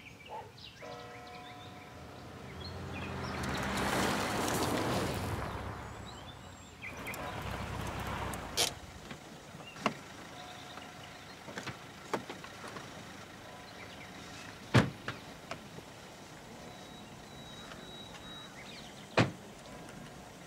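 A car pulls up, its noise swelling over a few seconds and fading as it stops. Then come several sharp clicks and knocks from car doors and handles, the loudest about fifteen seconds in.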